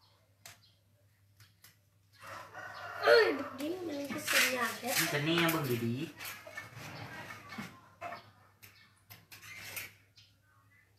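A rooster crowing, one long wavering crow starting about two seconds in and lasting some four seconds, with a few light metallic clinks of hand tools before and after.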